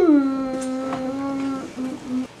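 A person humming one note that slides down from high to low and is held for about a second and a half, then two short notes at the same low pitch.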